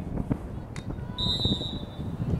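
Referee's whistle: one steady, high-pitched blast starting just over a second in, over low outdoor field noise.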